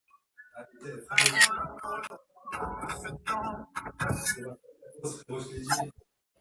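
Indistinct, fairly quiet voices in short broken bursts, with scattered clicks and knocks among them.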